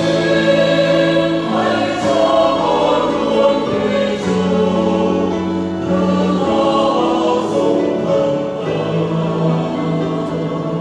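Mixed church choir singing a Vietnamese Catholic hymn in parts, holding chords that shift every second or so.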